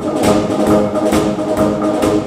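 Concert wind band playing a brisk passage: held brass and woodwind notes over a steady drum beat about twice a second.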